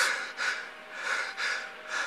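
A man breathing quickly and heavily in soft, noisy puffs, about two a second, close to the microphone.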